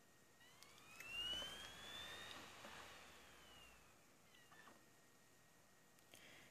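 DVD drive spinning up the disc to read it: a quiet whine that rises in pitch for about two seconds, then falls and fades out about four seconds in.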